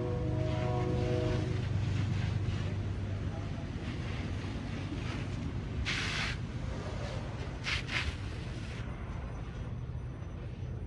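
Steady low rumble of fire engines running at a working structure fire, with short bursts of hiss about six seconds in and twice again near eight seconds.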